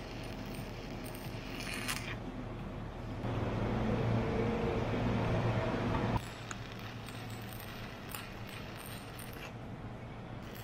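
Stick-welding arc on a 1/8-inch 7018 rod at about 100 to 110 amps, crackling and hissing steadily as a stringer bead is laid. It grows louder about three seconds in and cuts off suddenly about six seconds in, when the arc is broken.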